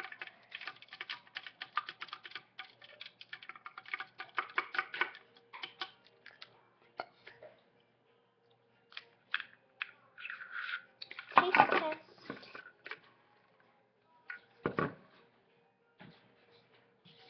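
A drinking straw clicking and tapping rapidly against the inside of a cup as a drink is stirred, thinning to scattered clicks. About eleven seconds in comes a louder rustling clatter lasting about a second, and a short thud follows near the end.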